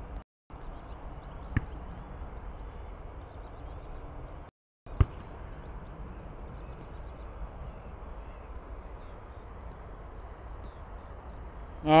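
Steady low background noise from the stream's outdoor microphone, cut by two brief total dropouts of the audio, one near the start and one about four and a half seconds in, each ending in a sharp click: signs of the stream's faulty audio.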